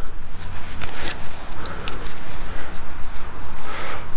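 Wind buffeting the microphone, an uneven low rumble with hiss, and a couple of brief rustles about a second in.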